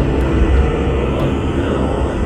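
A loud, steady deep rumble of thunder, a sound effect laid over the scene.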